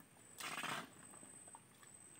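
A single short splash of mud and water, about half a second long, as hands work in a shallow muddy creek channel, over a faint steady high-pitched whine.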